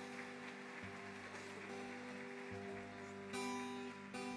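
Quiet live band intro to a song: held chords over a bass note that changes about every second and a half, turning louder and brighter about three seconds in.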